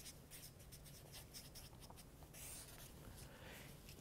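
Faint marker strokes on a whiteboard: a quick run of short strokes as a word is written, then a longer, smoother stroke a little over two seconds in.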